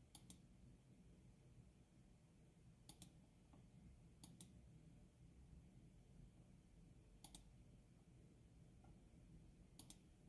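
Near silence broken by about five faint computer mouse clicks, each a quick paired tick of press and release, spaced a few seconds apart.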